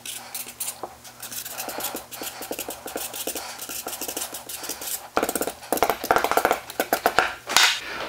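Felt-tip marker scratching across notepad paper in quick strokes as letters are written, busier and louder from about five seconds in.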